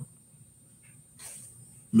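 A pause in a man's speech: quiet room tone with a faint intake of breath a little over a second in, just before he starts talking again.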